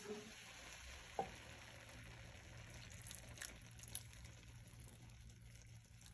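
Faint sizzling of lentils and spices frying in a skillet on an electric stove, with a few light clicks.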